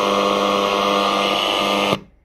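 A radio broadcast of music with long held tones playing loudly through the SILVER ST3200 boombox's speakers. It cuts off abruptly near the end as the function switch is moved.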